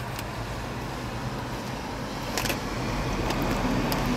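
Steady rush of ocean surf breaking and washing up the sand, heard from inside a car by the beach, with a few light clicks; it grows louder near the end.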